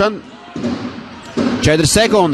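A basketball being dribbled on a hardwood court in an echoing arena, under a TV commentator's voice.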